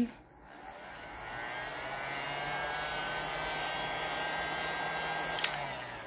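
Handheld electric heat gun switched on: its fan motor spins up with a rising whine over the first two seconds, blows steadily, then is switched off with a click near the end and winds down.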